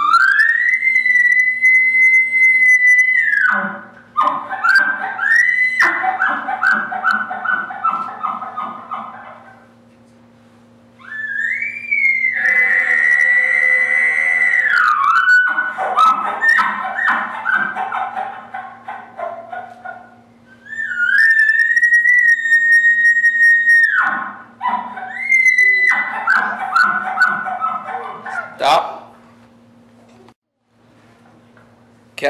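A man imitating a bull elk on an elk call blown through a bugle tube. He gives three bugles, each a high whistle held about three seconds, and each is followed by a run of quick chuckles. The second bugle has a growl beneath it.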